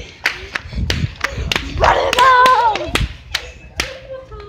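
A run of sharp clicks or smacks, irregular, about two or three a second, with a young girl's loud, drawn-out, wavering vocal note about two seconds in.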